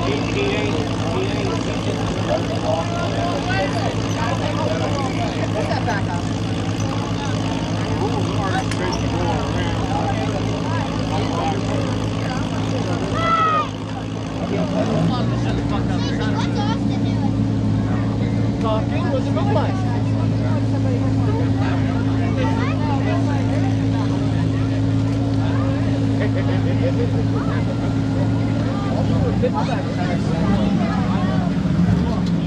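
Mud-bog truck engine running at a steady speed under crowd chatter. About halfway through, after a brief dip, a louder and steadier engine hum takes over.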